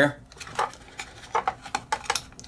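Hard plastic parts of a large transforming toy robot figure clicking and clacking as a hidden flap is handled, a series of light, sharp clicks.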